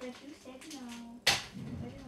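Voices talking in a small room, with one sharp knock about a second and a quarter in.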